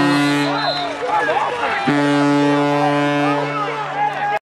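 A horn sounds two long blasts at the same low pitch, each about a second and a half, over voices shouting and cheering after a touchdown.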